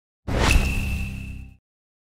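Logo sting sound effect: a whoosh into a sharp hit about half a second in, followed by a bright, high ringing tone over a low rumble that holds for about a second and then cuts off suddenly.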